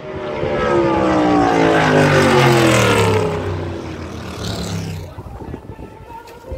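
Drag racing car engine at high revs, its pitch falling steadily for about five seconds as it swells and then fades. Quieter clicks and handling noise follow near the end.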